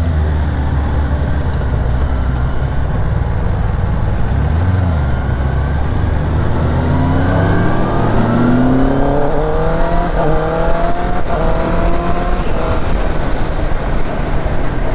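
Kawasaki ZX-10R's inline four-cylinder engine pulling away at low revs and accelerating through the gears. It gives a low steady note at first, then the pitch rises from about halfway through and drops at upshifts around ten and eleven seconds in, with wind rush on the microphone.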